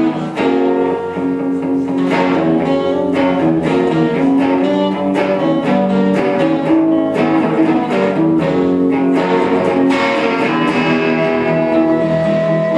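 Live instrumental rock: an electric guitar and an acoustic guitar picking and strumming together, with held melody notes over them, at a steady, loud level.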